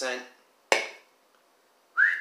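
A metal beer can set down on a stone countertop: one sharp knock about a third of the way in.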